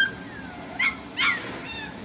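Four-week-old Standard Schnauzer puppies whining and yelping: a short whine at the start, two loud high yelps around the middle, and a fainter one near the end.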